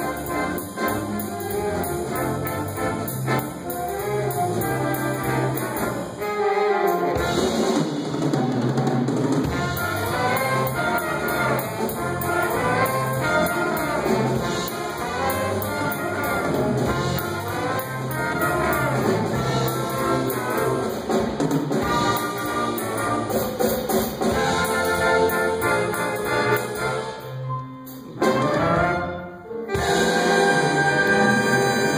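A live high school jazz big band playing a swing chart: brass section of trumpets and trombones with saxophones over drum kit and piano. Near the end the band stops briefly, then comes back with a loud ensemble hit.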